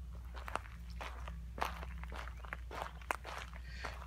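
Footsteps walking along a dirt and gravel trail, about two steps a second.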